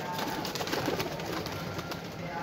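Chapray pigeons flapping their wings as they take off from a perch: a rapid run of sharp wing claps and flutters.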